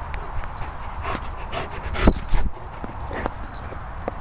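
German Shepherd close to the microphone giving short whines and grunts, the loudest about two seconds in.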